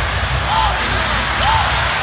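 Basketball arena sound from a game broadcast: steady crowd noise, with a ball bouncing on the hardwood court.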